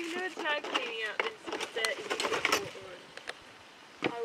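High-pitched young voices talking and calling out indistinctly, with a few sharp clicks among them; it quietens near the end.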